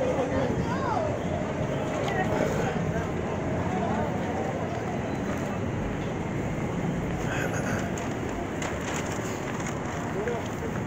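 Steady city street noise of passing traffic, with faint voices of passersby.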